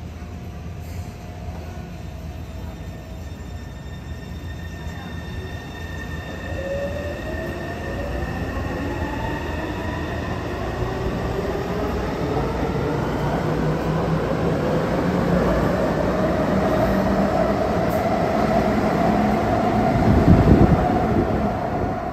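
Taipei Metro C301 train pulling out of the platform: its motors whine, rising steadily in pitch as it gathers speed, over a wheel-and-rail rumble that grows louder, loudest near the end.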